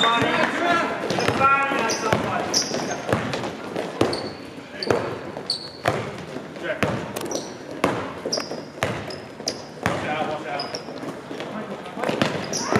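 Basketball dribbled on a hardwood gym floor, regular bounces a little under a second apart, with short high sneaker squeaks on the court. Players' voices call out near the start.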